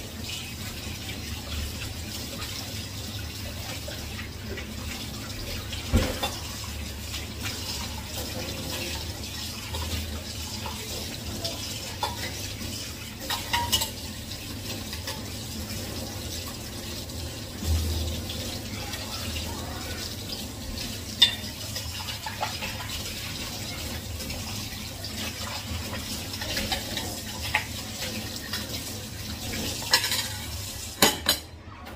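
Kitchen tap running steadily into a sink while dishes are washed by hand, with a few sharp knocks and clinks scattered through.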